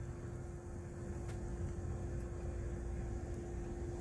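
Low, steady rumble of distant road traffic under a constant hum.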